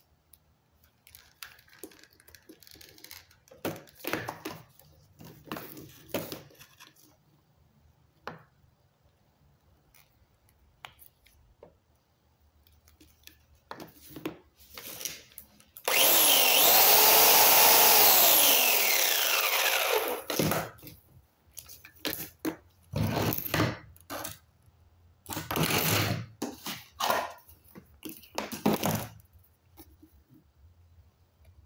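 A 1.5 HP corded electric chainsaw switched on about halfway through: it runs for about four seconds, then winds down in falling pitch when released. Scattered knocks and rustles of tools and power cords being handled come before and after.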